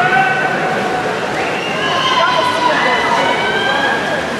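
A crowd of spectators cheering and screaming, many high-pitched voices holding long, overlapping yells. One set of yells climbs in pitch about a second and a half in.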